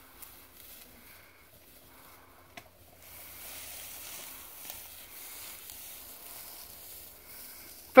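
Dry tall grass rustling and swishing as someone walks through it, a faint steady hiss that grows louder from about three seconds in.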